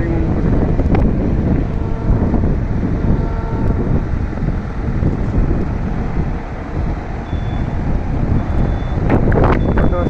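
Strong wind rushing and buffeting over the microphone, a loud steady rumble with no clear pitch.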